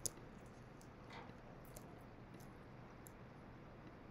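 Near-silent room tone with a few faint computer mouse clicks, the sharpest pair right at the start.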